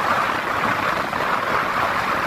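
Steady rush of wind and road noise while riding a motorbike along a paved road, with a faint low engine hum underneath.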